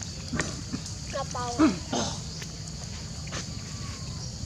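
Long-tailed macaques calling: a short run of brief high-pitched calls, then a louder low call falling in pitch, all within the first two seconds, over a steady background hiss.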